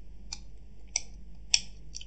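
Three faint, sharp clicks about half a second apart over a low steady hum.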